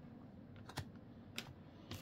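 A few faint, short clicks of trading cards being handled and set down on a card pile on a table, over low room noise.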